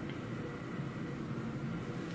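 Room tone: a steady low hiss with a faint hum, with no distinct events.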